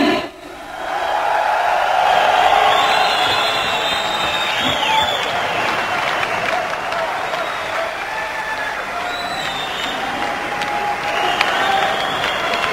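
Audience applauding and cheering for a bodybuilder's posing routine. The sound before it cuts off abruptly at the start, and the applause swells up within the first second, then holds steady.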